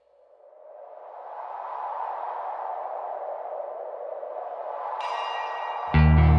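Ambient intro of a power metal track: a swell of rushing noise fades in from silence over about two seconds and holds. Bright pitched tones enter about five seconds in, and the full band comes in loudly just before the end.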